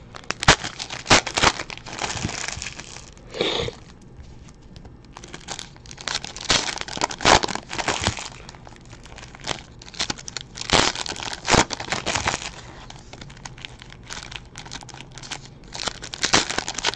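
Trading-card pack wrappers being torn open and crinkled by hand, with cards flicked through between packs: a run of irregular crinkles and rustles.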